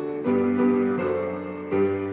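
Piano playing a hymn in block chords, with a new chord struck about every three-quarters of a second.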